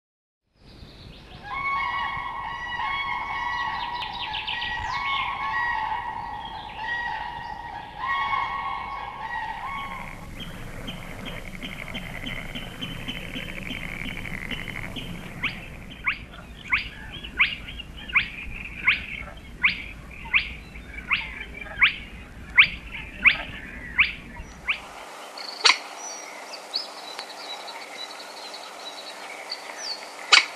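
Spotted crake calling: a sharp, rising whistle repeated evenly about one and a half times a second over most of the second half.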